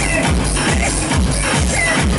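Retro techno DJ set playing loud through the club sound system, with a steady kick drum beat a little over twice a second under a dense electronic mix.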